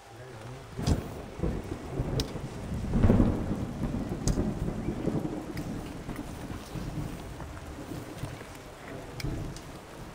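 Thunder rolling overhead: a low rumble that builds, is loudest about three seconds in, then slowly dies away. Rain falls throughout, with scattered sharp taps of drops landing close by.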